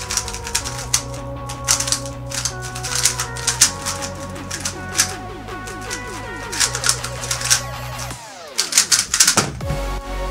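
Rapid clicking of a GTS2M 3x3 speedcube's layers being turned fast during a timed solve, over electronic dance music with a steady bass line. Near the end the music sweeps down in pitch and drops into a heavier beat.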